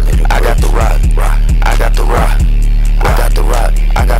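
Hip hop beat with a deep 808 bass that slides down in pitch on each hit, steady hi-hat ticks, and short chopped sounds repeating over it.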